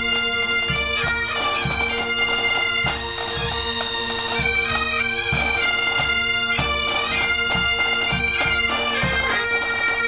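A pipe band's Great Highland bagpipes playing a tune: the drones hold one steady chord beneath the chanter melody. Low drum beats keep a regular pulse under the pipes.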